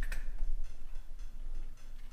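Light clicks and handling noise as a replacement fuel gauge is worked into the opening on top of a plastic mower fuel tank, with one sharp click just after the start and fainter ticks after it. A steady low hum runs underneath.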